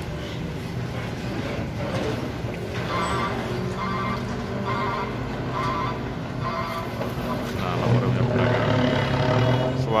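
Mitsubishi Fuso FM215 truck's 6D14 inline-six diesel engine running as the truck drives off, with its characteristic deep 'brum', growing louder about eight seconds in.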